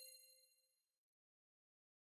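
The fading tail of a bright, ringing chime sound effect dies away early on, and near silence follows.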